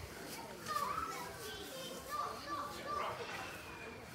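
Background hubbub of children's voices, with several short, high calls and shouts, loudest about a second in.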